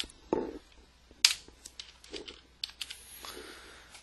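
A few separate keystrokes and clicks on a computer keyboard rather than steady typing, the loudest a little over a second in.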